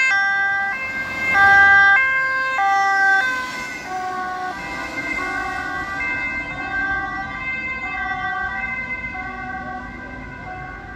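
Two-tone siren of a fire-brigade dive-team van, alternating between a high and a low note as it drives past. The whole pitch drops about three seconds in as the van passes, and the siren then fades as it drives away.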